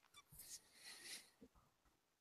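Near silence: faint room tone in a pause between voices.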